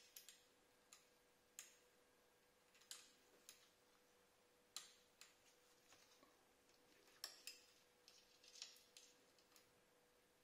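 Faint, sparse metallic clicks and ticks of an Allen key knocking against the steel dB killer and silencer tip as its fixing screw is worked, about ten irregular clicks in all, over a faint steady tone.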